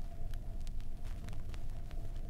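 Surface noise of a 7-inch 33⅓ RPM vinyl record playing: scattered clicks and pops of crackle over a steady low rumble.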